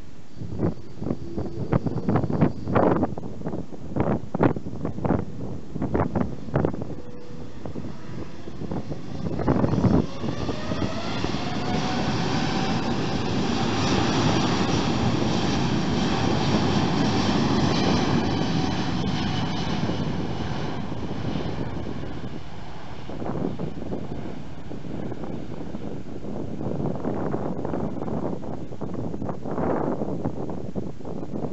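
Boeing 787-9 turbofan engines (Rolls-Royce Trent 1000) spooling up to takeoff power: about ten seconds in, a whine rises in pitch and then holds steady over a broad rush of engine noise that swells, stays loud for several seconds and then eases as the jet rolls away. In the first seconds and again near the end, gusts of wind thump on the microphone.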